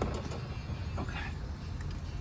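A few light clicks and scrapes as a hand flaring tool is fitted onto the end of a 3/4-inch copper line, over a steady low background rumble.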